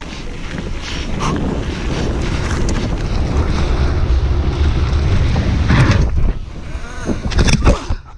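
Heavy wind buffeting on a mountain biker's camera microphone, with a low rumble from riding at speed. A few sharp knocks come near the end.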